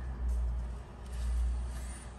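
A low rumble that swells twice, the loudest thing present, over faint handling of Pokémon trading cards as they are shuffled from one hand to the other.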